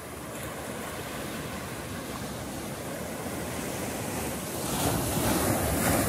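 Ocean surf washing up a sandy beach: a steady rushing of waves that grows louder, with a wave swelling in near the end.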